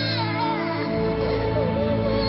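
Film score music with sustained held notes, with a brief high wavering cry over it near the start.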